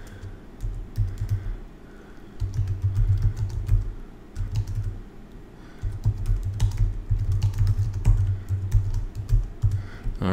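Typing on a computer keyboard: a run of keystroke clicks with a low thud to each, in three spells broken by two short pauses.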